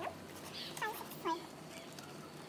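Three short, high-pitched animal calls about a second in, each sliding in pitch, with faint clicks from stiff cardboard puzzle pieces being handled.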